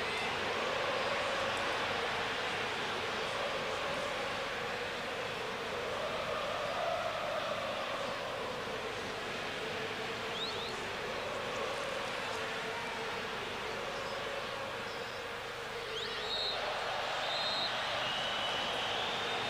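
Steady stadium crowd noise from a large football crowd, with chanting that rises and falls. A referee's whistle sounds near the end as a foul on Ronaldo is called.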